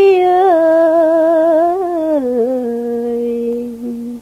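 Tày then folk singing: a solo voice holds one long, wavering note that steps down in pitch twice and fades out near the end, with no instrument heard.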